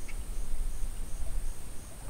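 Insects calling in the background: a steady high-pitched buzz with a fainter pulsed chirp about twice a second, over a low ambient rumble.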